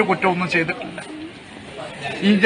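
A man's voice speaking, trailing off about halfway through, with a short low hum a little after.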